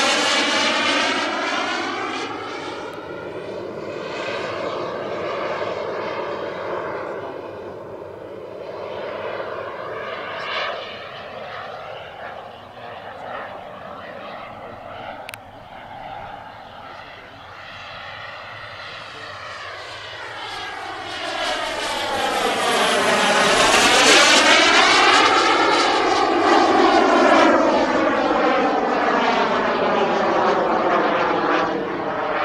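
Turbine engine of a large radio-controlled scale model jet (Mirage 2000C) in flight, with a steady jet whine and rush. It is loud at first, fades as the jet flies far off, then grows loud again about 21 seconds in on a close pass, its pitch sweeping down and up as it goes by.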